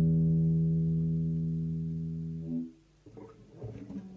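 Nylon-string guitar: a low chord rings and slowly fades, then is damped about two and a half seconds in. Soft knocks and rubbing follow as the guitar is handled.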